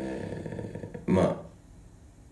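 A man's voice: a drawn-out vowel that fades out, then one short, loud syllable about a second in.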